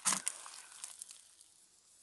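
Water from a watering can pouring onto the soil of a potted cabbage, a faint hiss that fades out about a second and a half in.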